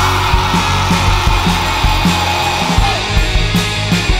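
Pop-punk band playing: electric guitars, bass and a steady drum beat, with a held high note for about three seconds that slides down near the end.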